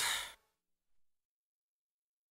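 The last of a song fading out within the first moment, then silence: a gap between two songs in a slideshow soundtrack.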